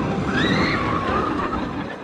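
Fahrenheit, an Intamin steel roller coaster: a loaded train runs along its track with a steady rushing rumble. About half a second in, a high cry from the riders rises and falls.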